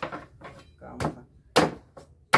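A knife chopping into an ear of corn in its husk on a wooden board: three sharp chops, one at the start, one about a second in and one near the end.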